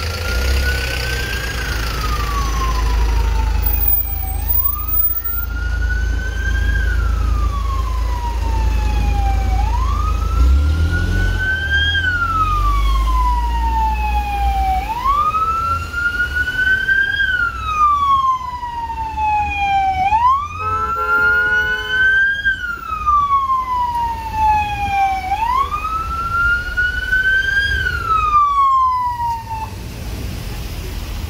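Emergency vehicle siren sounding a wail that rises quickly and falls slowly, repeating about every five seconds, over a low traffic rumble. A short horn blast sounds about two-thirds of the way through.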